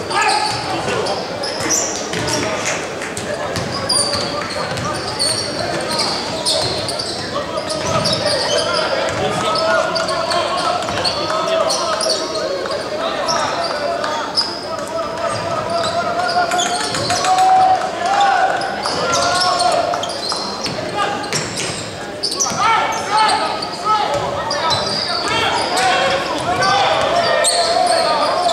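Live basketball game sound in a large arena hall: a basketball bouncing on the hardwood court amid indistinct shouts and chatter from players and spectators, all with a hall echo.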